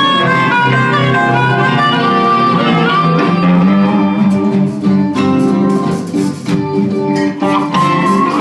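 A live blues band playing a slow, heavy groove on electric guitars and bass, with a blues harmonica blown through the vocal microphone. Sharp strummed accents come in about halfway through.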